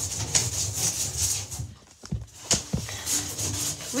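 Plastic hanger scraping the bottom of a bathtub in short rubbing strokes to lift soap scum, with a brief lull about halfway and a couple of light knocks after it.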